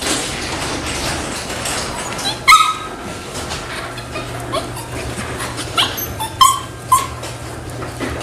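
A small Morkie dog yipping excitedly in short, sharp calls. The loudest comes about two and a half seconds in, and a quick run of several more comes near the end.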